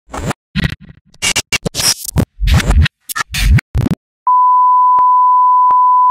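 About four seconds of choppy, stop-start bursts of mixed sound, then a loud steady beep tone that starts just after four seconds in and holds, with two faint clicks under it.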